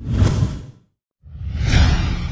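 Two whoosh sound effects of an animated title card, each with a deep rumble underneath: a short one that dies away within a second, then a longer one starting just past the halfway mark that swells and begins to fade.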